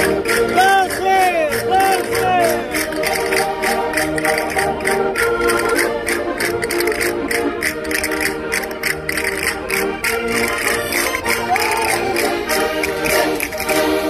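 Concertinas playing a folk dance tune of many held reed notes over a regular sharp beat about three to four times a second, with voices rising over the music near the start and again near the end.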